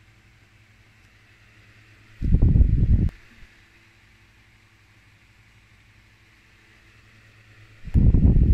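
A low, steady hum, with one muffled rumble about two seconds in that lasts just under a second. The rumble is typical of a phone microphone being handled or bumped.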